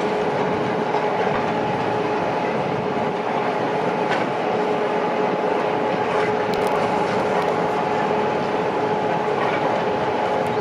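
Heavy construction machinery running together: several hydraulic excavators working at once, a steady mechanical din with a constant whine held at one pitch and a few faint knocks.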